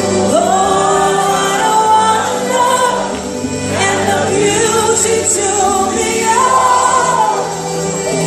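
Live gospel worship song: a woman's lead voice and backing singers over a band with keyboard and guitars, sung in held, gliding notes.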